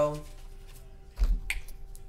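A dull low thump a little over a second in, then one sharp snap, as hands handle a deck of tarot cards.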